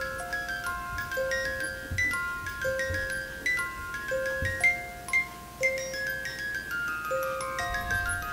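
Wind-up music box in the base of a snow globe playing a slow melody, one ringing metallic note after another, with a few soft low bumps.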